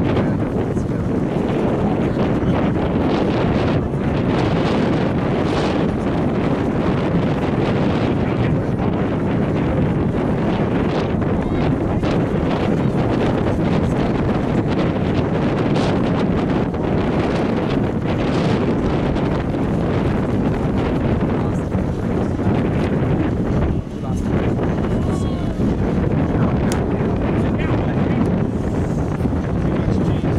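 Wind buffeting the camera microphone: loud, steady wind noise throughout, with a brief dip about 24 seconds in.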